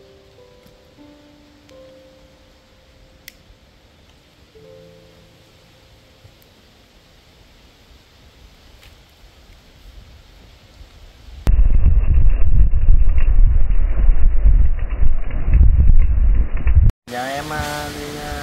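Soft background music, then about eleven seconds in a sudden loud low rumble of wind buffeting the microphone, lasting about five seconds and stopping abruptly at a cut.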